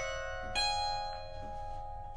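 Harp strings plucked and left ringing, with a fresh note struck about half a second in, then the notes slowly fading.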